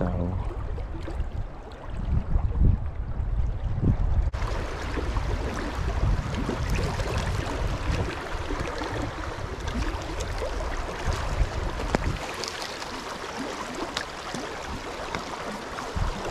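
Flowing creek water rushing over a shallow riffle. A low rumble fills the first four seconds, then it changes suddenly to a steadier, brighter rush of water.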